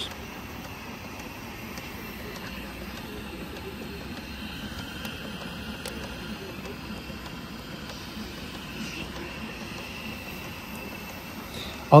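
Steady hissing noise from a coal-fired live-steam model locomotive standing in steam, even and unbroken throughout.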